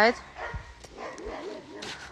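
Dogs barking and whining quietly, with a few short light knocks.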